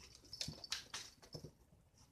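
A cat batting and nosing at small toys on a mat: a handful of quick clicks and scuffs with a couple of soft thuds, between about half a second and a second and a half in. Faint high chirps sound alongside them.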